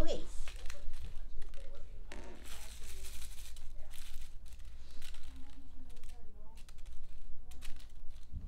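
Crinkling of a crumpled paper ball toy being handled, a run of short scrunches that is densest a few seconds in.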